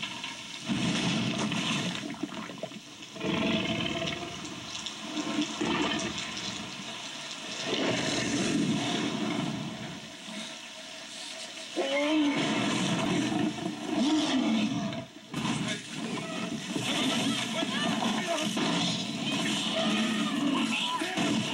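Heavy rain pouring steadily, with a Tyrannosaurus rex's growls and roars over it that grow loudest from about twelve seconds in.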